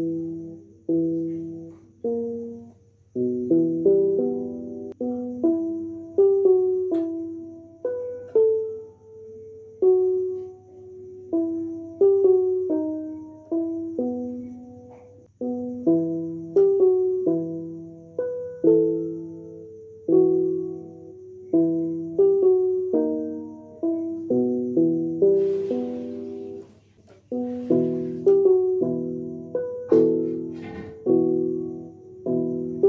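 Keyboard playing a slow line of separate notes, each struck and then fading. From about halfway through, both hands play, adding a second part alongside the low notes.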